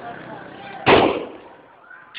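A single loud bang about a second in, dying away over about half a second, over faint crowd voices.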